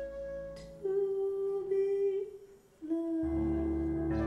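Live ballad music with a woman's wordless, humming-like vocal: long held notes over soft accompaniment. The sound dips almost to silence a little past halfway, then a lower held note comes in with bass underneath.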